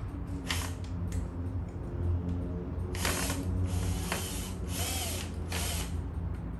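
Cordless drill-driver backing screws out of a robot vacuum's plastic housing, run in several short bursts mostly in the second half, with a mechanical ratcheting clatter over a steady low hum.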